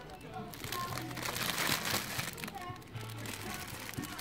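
Plastic cellophane wrapping of packaged Easter ornaments crinkling as it is handled, loudest about one to two seconds in. Shop background music and other shoppers' voices play faintly beneath it.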